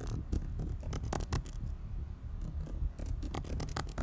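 Keystrokes on a computer keyboard, typed in quick bursts with short pauses between them, over a low steady background rumble.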